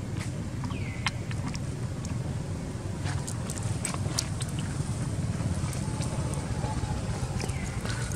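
Outdoor ambience: a steady low rumble with scattered short clicks, and two short falling chirps, one about a second in and one near the end.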